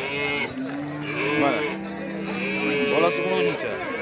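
Cattle lowing in long, drawn-out calls, over people talking.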